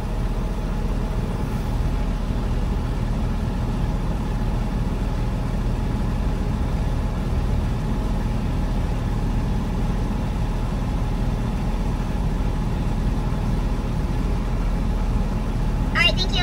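Semi truck's diesel engine idling: a steady low rumble that holds unchanged while the truck stands still on the scale.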